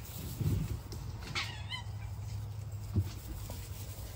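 A fox gives a short, wavering call about a second and a half in. Low thumps come around it, the sharpest about three seconds in.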